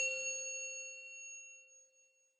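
A single bell-like chime struck once at the start, its several clear tones ringing out and fading away over about two seconds: a logo sting sound effect.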